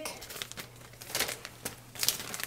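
Thin plastic bag crinkling in soft, irregular rustles as it is peeled off a freshly pressed corn tortilla.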